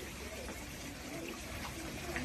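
Faint swimming-pool water trickling and lapping as swimmers move through it.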